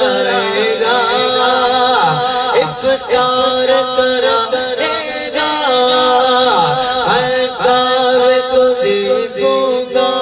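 A man's voice singing an Urdu naat into a microphone with no instruments, in long, held, ornamented notes that bend up and down in pitch.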